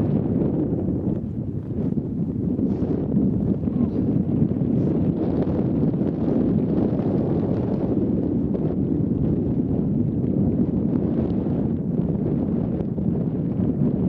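Wind buffeting the microphone, a continuous low rumble that swells and eases slightly in gusts.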